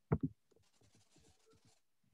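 Two brief voice sounds just after the start, then faint scattered scratching.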